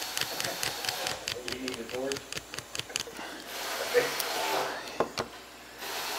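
Butane soldering gun being worked at a wire joint: a quick run of small sharp clicks for the first few seconds, then a soft steady hiss from about halfway through.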